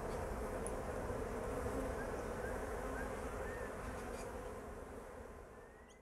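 Bees flying around the hives, a steady buzzing drone that fades away near the end.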